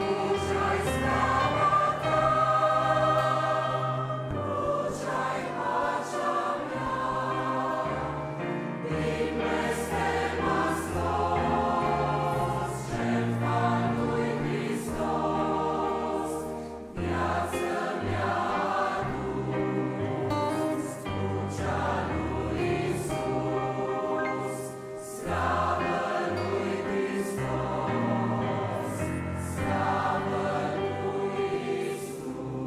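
A choir singing the refrain of a Romanian Christian hymn, in lines with short breaks between them.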